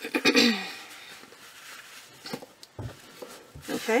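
A person coughs once at the start, the loudest sound here. Afterwards come faint light taps and rustling as a roll of cotton fabric strips is handled.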